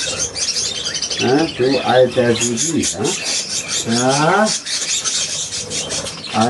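Budgerigars chattering and warbling in a dense stream of quick chirps, with a man's voice murmuring twice over them.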